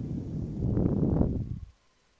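A burst of low rumbling noise on the microphone, starting abruptly with a click and stopping after less than two seconds.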